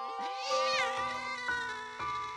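A cat meowing once: a drawn-out meow that rises and then falls in pitch.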